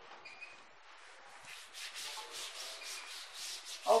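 Cloth rubbed quickly back and forth over a chalkboard, wiping off chalk, in rapid strokes of about five a second that start about a second and a half in.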